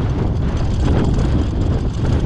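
Steady, loud rumble of wind buffeting the microphone on a moving vehicle, with engine and road noise underneath.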